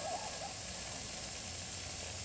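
Steam radiator hissing steadily as steam heat comes up, with a faint wavering whistle near the start.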